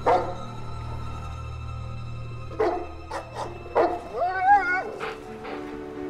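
A dog barks a few times, then gives a short wavering whine, over a sustained music score.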